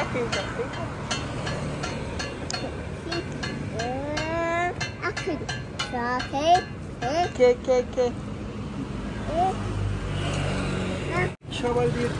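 A small child's high voice making rising, sing-song exclamations over a steady low traffic rumble.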